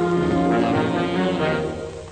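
Orchestral music led by brass, playing held chords; the chord fades out near the end.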